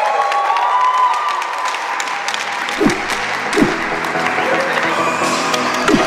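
Background music over a crowd applauding, with two deep falling bass hits about three seconds in and a third near the end.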